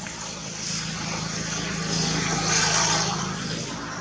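A passing engine: a steady low hum that grows louder to a peak a little past halfway, then fades.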